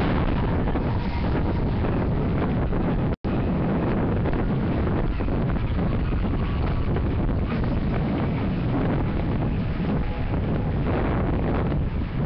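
Wind buffeting a camera microphone: a loud, rough, steady rumble that cuts out for an instant about three seconds in.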